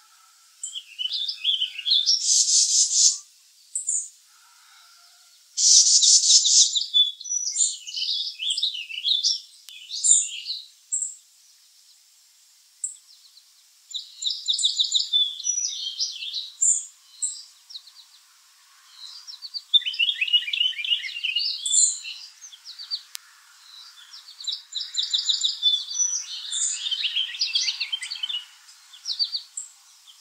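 Small songbirds chirping and trilling in a string of high-pitched calls with short gaps: two fast buzzy trills in the first seven seconds, then runs of quick falling chirps.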